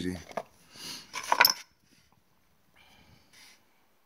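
Brass-headed shotgun shells and cartridges clinking and rattling in a wooden box as they are handled and one is picked out, a short loud flurry of sharp clicks about a second in, then a faint rustle.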